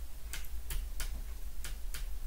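Five light clicks at uneven spacing, from long fingernails tapping and clicking against tarot cards as they are handled.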